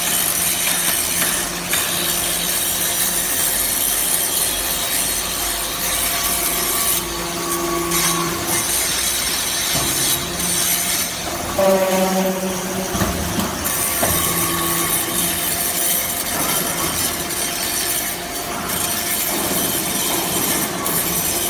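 A hydraulic scrap-metal-chip briquetting machine and its chip conveyor running steadily. There is a constant scraping, rattling noise of metal shavings and machinery under a steady hum, with a brief squeal about halfway through.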